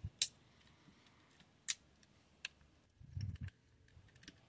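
A few sharp, scattered clicks of a plastic-and-diecast action figure being handled and posed, its parts clicking against each other and the fingers, with a soft low thump near the end.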